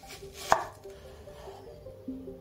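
A chef's knife slicing through a red onion and knocking once, sharply, on the wooden cutting board about half a second in. Soft background music plays underneath.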